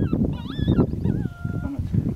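Electronic predator caller playing high, wavering animal distress cries: three cries that bend up and down in pitch, the last one held on a steady note. A low wind rumble runs underneath.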